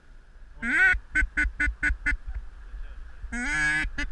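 Ducks quacking: one call, then a quick run of five short quacks at about four a second, then a longer drawn-out quack near the end.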